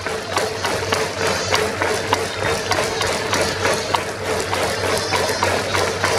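Stadium cheering music for the batting side: a steady, regular beat with sustained instrument tones, carried on over the crowd at a baseball game.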